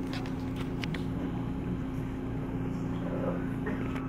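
Steady low hum of a room's machinery, such as ventilation or a projector fan, with a few faint clicks in the first second.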